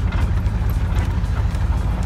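Pickup truck driving on a bumpy dirt road, heard from inside the cab: a steady low rumble of engine and road noise.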